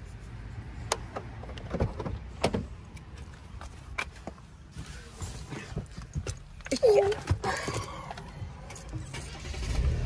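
A few sharp clicks and knocks with some rustling as someone climbs into a parked car, over a low steady hum.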